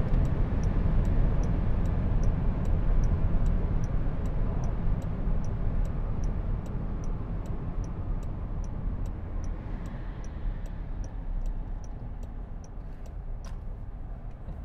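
Wind and tyre noise inside a Jaguar I-Pace electric car, fading steadily as it slows from about 200 km/h. The turn indicator ticks evenly, about two to three ticks a second.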